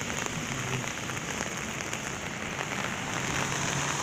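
Steady rain pattering on an open umbrella held overhead.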